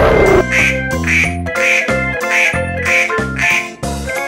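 Duck quacks, six in an even row about two a second, in time with upbeat background music.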